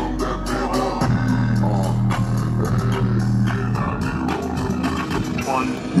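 Hip-hop track playing through a JBL Charge 4 portable Bluetooth speaker. A long, deep bass note is held from about a second in until near the middle, then the low bass drops away, with vocal snippets over the beat.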